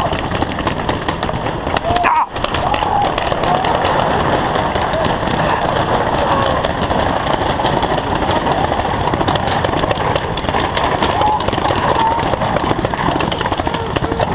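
Many paintball markers popping in rapid, overlapping shots, over a constant din of players' shouting voices.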